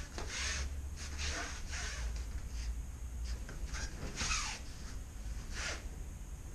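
Bare feet brushing and sliding on the mat and cotton gi and hakama rustling as two aikidoka move through a throw, heard as a string of short swishes with breathing, over a low steady hum.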